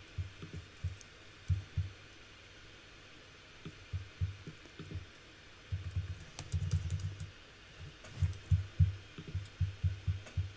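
Typing on a computer keyboard: irregular bursts of short, dull keystrokes, with a pause of a second or two a couple of seconds in.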